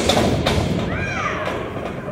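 Wrestlers thudding onto the ring mat, the ring boards booming low and dying away over the first second. A short rising-and-falling voice from the crowd about a second in.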